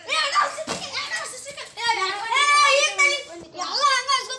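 Children's voices talking loudly and excitedly, several exchanges in a row.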